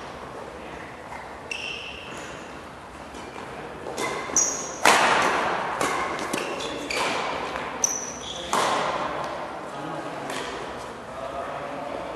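Badminton doubles rally: rackets striking the shuttlecock in a run of sharp hits, the hardest about five seconds in and again near eight and a half seconds. Short high squeaks of court shoes on the mat come between the hits, and every hit echoes in a large hall.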